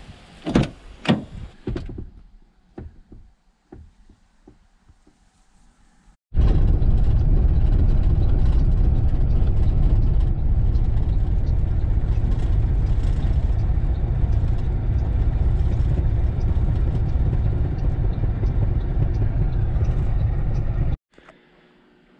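A car door handle clicking and the door knocking open in the first couple of seconds. Then a loud, steady rumble of road noise inside the cabin of a 2008 Crown Victoria police car as it is towed down a road, which cuts off near the end.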